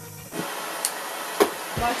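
Handheld propane torch hissing steadily once its gas is opened about a third of a second in, with a sharp click about one and a half seconds in.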